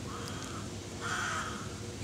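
A bird calling twice in the background, two short harsh calls about a second apart, the second a little longer.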